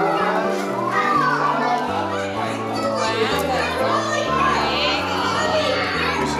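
Children chattering and calling out over music with a bass line moving in held notes, with adult voices mixed in.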